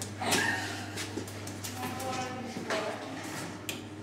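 Faint voices of people talking in the background over a steady low hum, with one sharp click near the end.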